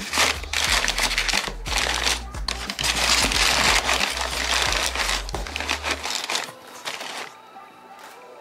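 Crumpled kraft and tissue packing paper crinkling and rustling as a plastic deli-cup container is pressed down into it inside a cardboard box, dying away after about six seconds.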